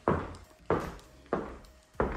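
Footsteps on a wooden floor: a steady walking pace of a step about every two-thirds of a second, each a short thud.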